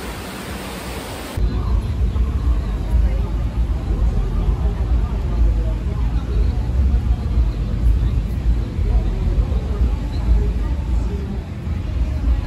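Wind buffeting a phone microphone on an open beach: a heavy, gusting low rumble that starts abruptly about a second and a half in, over faint background noise. Before it, the tail end of a pop song.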